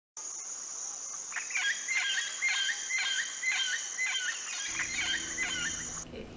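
A bird calling over and over, a short bent note repeated about twice a second, over a steady high drone of insects in coastal sandy-soil forest (restinga).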